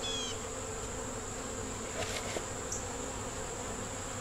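Honey bees from an opened Langstroth hive buzzing in a steady, even hum.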